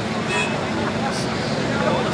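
Off-road 4x4 engines running steadily, mixed with the chatter of people talking.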